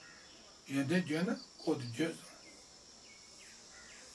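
Crickets chirping steadily in the background, with a man's voice speaking two short phrases in the first half.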